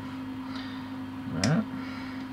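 A quiet, steady background hum with one short spoken word about one and a half seconds in. No tool or handling sound stands out.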